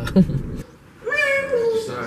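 A high, drawn-out meow-like cry starting about a second in, dipping slightly in pitch toward its end, after a brief bit of talk.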